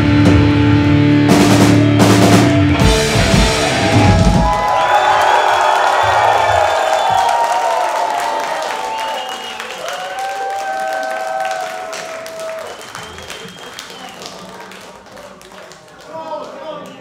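A live metal band ending a song: heavy guitars, bass and drums hammer out the last bars, close on two final hits, and ring out about four seconds in. The crowd then cheers and shouts, fading gradually.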